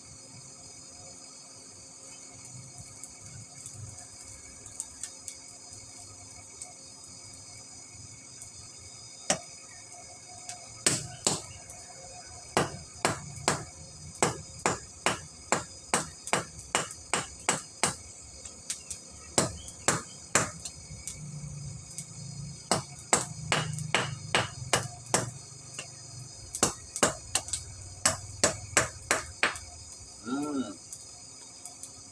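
Hand hammer forging a steel chisel blank held in tongs on a round steel anvil block: a long run of sharp metallic strikes, about two a second with a few short pauses, starting about nine seconds in. Steady high chirring of crickets runs underneath.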